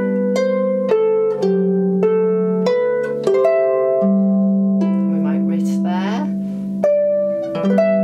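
Lever harp played solo at a slow, even pace: a plucked melody in the right hand over sustained left-hand chord notes, each note ringing on after it is struck.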